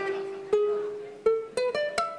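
Ukulele played one note at a time, picking a pentatonic scale shape: a held note, then a quicker run of notes climbing in pitch.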